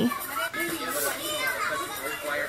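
Many children's voices chattering and calling at once, with no single speaker standing out, heard through a laptop's speaker.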